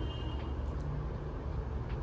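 Steady low background rumble, with a couple of faint small clicks about half a second in and near the end.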